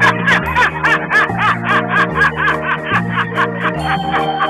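A man laughing in quick, rhythmic bursts, about four a second, over music with a steady repeating bass line.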